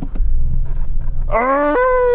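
Low engine rumble inside the Audi RS7's cabin, then, about a second and a half in, a man's long rising howl of exasperation that holds one pitch for about a second.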